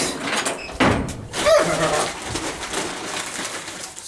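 Knocks and a rustling hiss of feed being handled: a cup scooped into grain in a feed bin, with a couple of clunks about one and one-and-a-half seconds in.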